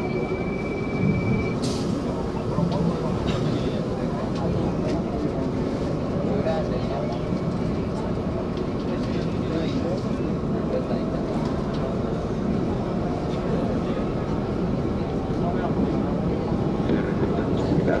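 Metro train and station ambience: a steady, loud rumble of a train on rails with indistinct voices of people on the platform.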